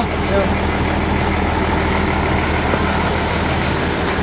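Large intercity bus's diesel engine idling, a steady low hum.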